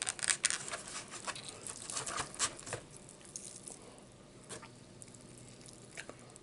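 Close-up handling of barbecue ribs as they are picked up from the plate or container: a dense run of crackles, clicks and small tearing sounds over the first three seconds, then a few scattered ticks.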